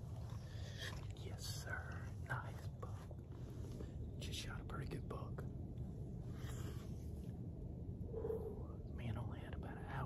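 A man whispering close to the microphone, in short breathy phrases, over a steady low rumble.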